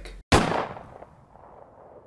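Logo-sting sound effect: one sudden bang, like a gunshot, with a tail that fades away over about a second and a half. It is cut in cleanly, with dead silence just before and just after it.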